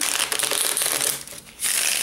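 Playing cards being handled on a wooden table: a dense rustle lasting about a second, then a shorter second rustle near the end.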